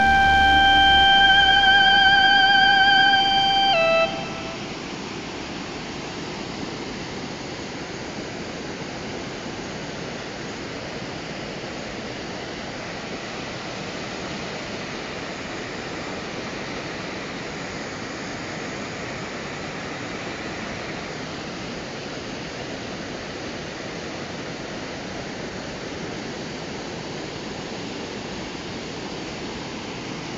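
A held electronic musical note with vibrato ends abruptly about four seconds in. After it comes a steady rush of creek water pouring through rapids over granite boulders.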